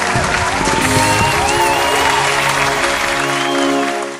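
Applause sound effect laid over celebratory music with held chords. It starts suddenly and stays loud and steady.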